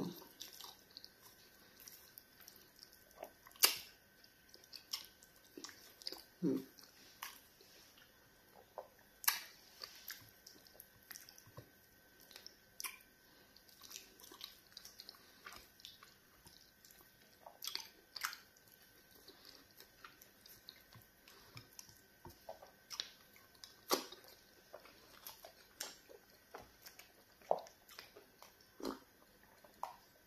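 Close-miked eating of pounded yam fufu with egusi soup by hand: irregular wet mouth clicks and smacks of chewing, with a faint steady high tone underneath.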